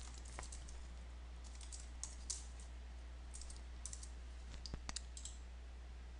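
Faint computer keyboard typing: scattered keystrokes, some in small quick clusters, over a steady low hum.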